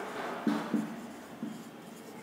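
Marker pen writing on a whiteboard: a few short scratching strokes as a word is written.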